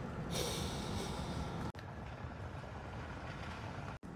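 Steady low rumble of a car cabin, with a loud breathy rush of air close to the microphone lasting just over a second, starting a moment in. The sound drops out briefly about halfway through.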